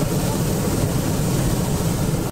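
Hot-air balloon's propane burner firing, putting heat into the envelope: a loud, steady rushing noise that starts suddenly.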